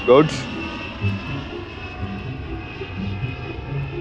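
Airplane engine running steadily: a low drone with a thin high whine over it.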